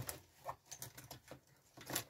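A few faint, light clicks and taps of pens being handled.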